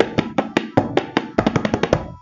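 Tabla solo: a fast run of strokes on the dayan and bayan, roughly ten a second, with deep bass bayan strokes under them in the second half.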